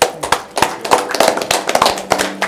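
A small group of people applauding: many overlapping, uneven hand claps.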